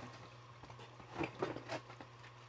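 A few soft taps and rustles of plastic bait packages being handled, clustered a little past the first second, over quiet room tone.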